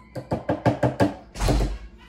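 Rapid taps of a utensil knocked against the rim of a glass container, about six a second, to shake off thick blended marinade, followed by a heavier, deeper thud.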